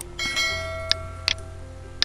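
Subscribe-button animation sound effect: a bright bell-like notification chime that rings for about a second, with three sharp clicks of the animated cursor. A low steady hum runs underneath.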